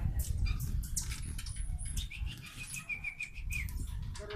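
Hummingbirds chipping and twittering around feeders: many sharp high chips, with a quick run of repeated notes a little after two seconds in, over a low rumble.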